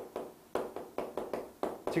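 Chalk tapping and striking against a blackboard in a quick series of short strokes as characters are written, about four a second.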